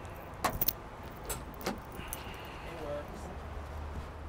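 Car key jangling and clicking in the trunk lock of a 1966 Ford Mustang fastback as the trunk latch is worked open: a few sharp metallic clicks, the loudest about half a second in.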